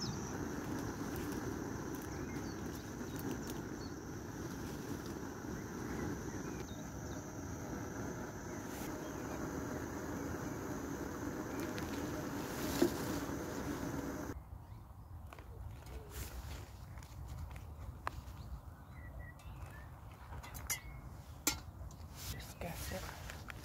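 Portable gas camping stove burning steadily under a pot, a constant even hiss with a low hum in it. It cuts off abruptly about fourteen seconds in, leaving quieter outdoor air with a few light clicks and rustles of handling.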